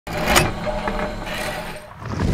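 Sound effect of an animated logo intro: a sharp hit about a third of a second in, over a low steady hum that fades toward the end.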